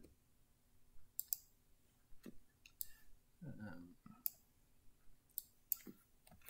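Computer mouse clicks: about seven sharp single clicks, irregularly spaced, with a brief murmured voice sound about halfway through.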